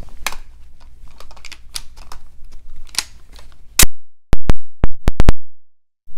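Light handling clicks and rubbing from a Mossberg 500 shotgun and its sling. About four seconds in, the audio cuts to dead silence, broken by a loud crack and about six sharp pops in quick succession: a recording or microphone glitch.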